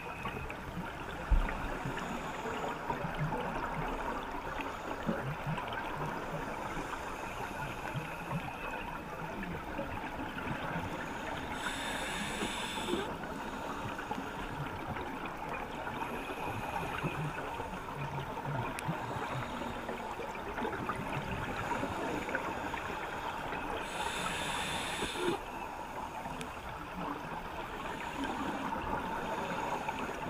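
Underwater ambience picked up through a camera housing: a steady crackling hiss, with a short knock about a second in. Twice, about twelve seconds apart, a diver's scuba regulator releases a burst of exhaled bubbles, heard as a louder, brighter gush of hiss lasting about a second.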